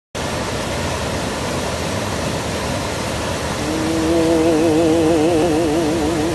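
Mountain stream rushing down a rocky cascade, a steady full-range water noise. About three and a half seconds in, music enters over it: one long held note with a wide, even vibrato.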